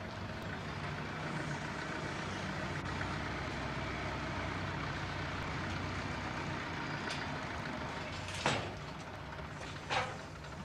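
A heavy vehicle's engine runs steadily. Near the end there are two short, sharp, loud sounds about a second and a half apart.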